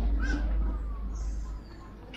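Birds calling in the trees: one short harsh call about a quarter second in, and a brief high chirp a little later. Under them a low rumble on the microphone fades out about a second and a half in.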